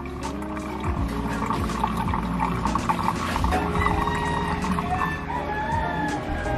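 Air from a homemade two-bottle air pump bubbling steadily into aquarium water. A rooster crows with drawn-out calls in the second half.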